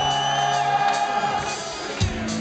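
A live rock band with electric guitars, saxophones and drums playing loudly through a concert PA, holding long sustained notes.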